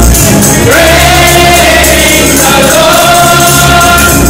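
Live gospel song: lead singer and choir singing with band accompaniment and percussion. About a second in, a voice slides up into a long held note.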